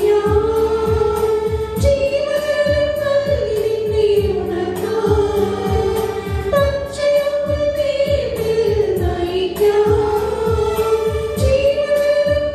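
Women's choir singing a Malayalam devotional hymn in unison, in long held notes, over a steady low rhythmic beat of accompaniment.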